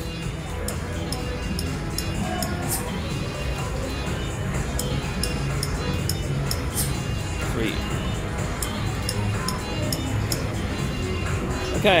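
Fu Dao Le slot machine playing its music and sound effects as its reels spin, with a run of short high clicks through the spins.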